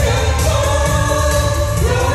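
Amplified singing through microphones over a pop backing track with a steady bass, the voices holding long notes.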